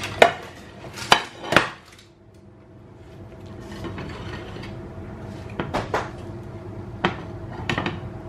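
A metal spatula clinking and scraping against a metal baking tray and a ceramic plate as baked squash halves are lifted out and served. There are three sharp clinks in the first two seconds and a few more in the second half.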